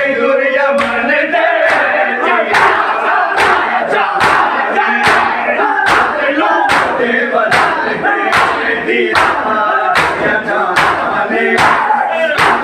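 A crowd of mourners doing matam: bare-chested men slapping their chests with open hands in unison, one sharp beat a little more than once a second. Many men's voices chant and call out between the beats.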